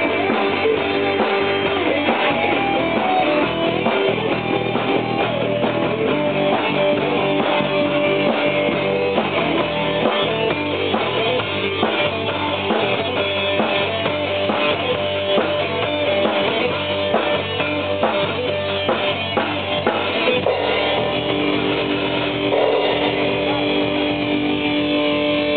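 A rock band playing live: electric guitar over a drum kit, with a shift to longer held guitar notes near the end.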